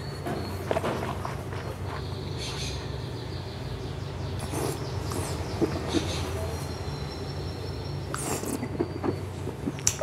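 Red wine being swished and slurped in the mouth to rinse the palate, heard as a few short soft slurps and mouth noises over a steady low hum.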